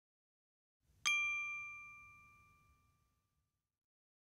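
A single bright, bell-like ding sound effect: one strike about a second in, ringing out and fading away over about two seconds.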